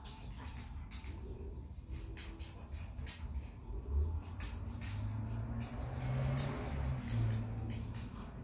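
Dogs play-fighting over a toy: scattered clicks and scuffling, a thud about four seconds in, then a low, steady growl that builds through the second half.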